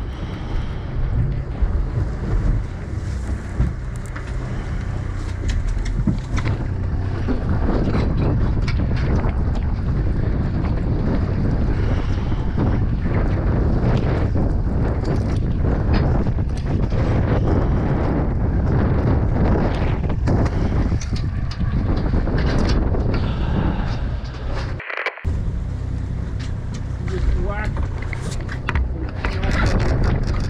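Wind buffeting the microphone on an open boat deck, over a steady wash of sea and boat noise, with scattered sharp clicks. The sound drops out completely for a moment about 25 seconds in.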